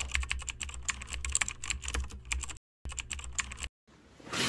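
Computer keyboard typing: quick, irregular key clicks, broken by two brief silent pauses in the second half.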